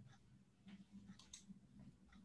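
Near silence: faint room hum with a few soft clicks of a computer mouse.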